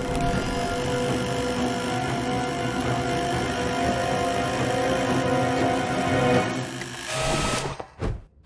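Electric hair clippers buzzing steadily, held close, under orchestral film music, with a short burst of hiss about seven seconds in.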